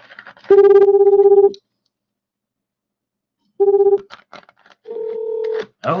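Telephone call-progress tones over the line of an outgoing call: a loud, steady ring tone lasting about a second, a short beep of the same pitch a couple of seconds later, then a different ring tone near the end as the call is forwarded to another line.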